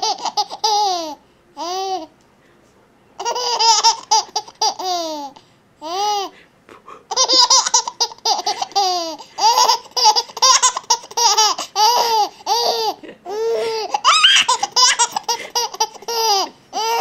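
Young baby laughing in repeated bouts of short, high-pitched giggles, with brief pauses between bouts.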